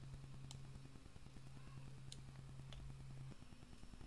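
Faint computer mouse clicks, three in all, spaced irregularly over a low steady hum that stops shortly before the end.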